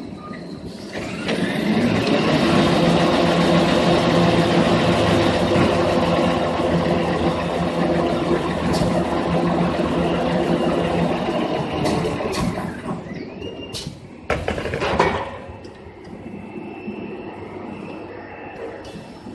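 Automatic toilet paper machine running. About a second in it spins up to a loud, steady whine and hum with several steady tones, then winds down around twelve seconds, followed by two sharp knocks.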